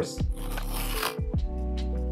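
Background music playing. During the first second comes a short tearing rustle as the pull tab on a cardboard phone-case box is peeled open.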